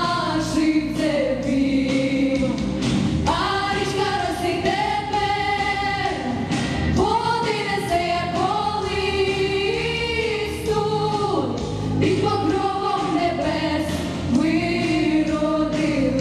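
A girls' vocal ensemble singing together into microphones, long held notes with vibrato, over instrumental accompaniment.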